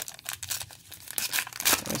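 The foil wrapper of a Donruss Optic football card pack being torn open by hand: a run of sharp crinkling crackles, with the loudest tear near the end.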